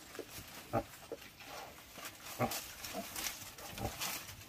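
Newborn piglets giving short grunts and squeals, about six calls in four seconds, over a light rustle of dry leaves in their nest.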